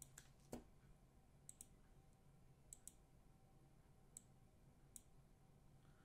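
Faint computer mouse button clicks, about eight in all, some in quick pairs, against quiet room tone with a low hum.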